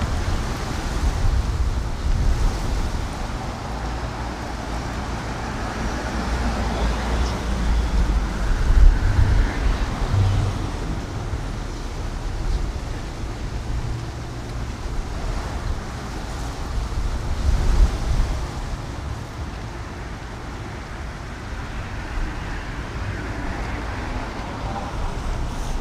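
Outdoor street ambience: a steady wash of road traffic with wind rumbling on the microphone, swelling a little twice.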